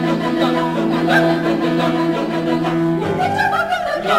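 Mixed choir singing, a long low note held steady under moving upper voices; the chord shifts to a new sound about three seconds in.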